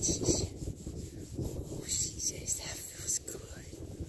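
Hand rubbing and stroking a foal's coat and mane close to the microphone, with soft whispering.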